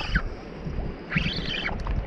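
Wind rumbling on the microphone over open water, with a short high, wavering voice-like call about a second in.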